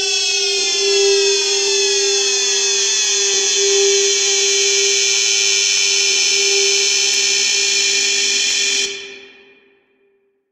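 Closing synth sound of an electronic drum and bass mix, with no beat: a loud, buzzy sustained synth tone sliding slowly downward in pitch over a steady held note. It cuts off about nine seconds in and fades to silence.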